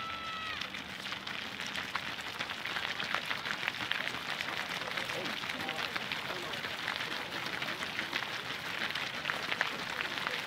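Footsteps of a large group of runners jogging past on a gritty asphalt path, a dense patter of shoe strikes that thickens and grows louder as the pack comes closer, with scattered voices among them. A brief high-pitched tone sounds at the very start.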